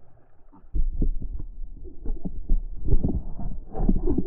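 Handling noise: a run of irregular low thumps and knocks with a rumble beneath, starting about a second in, as the speared fish is passed into the inflatable boat and the camera is brought aboard.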